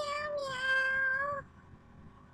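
Domestic cat meowing: one call trailing off, then a longer, steady meow that stops about a second and a half in.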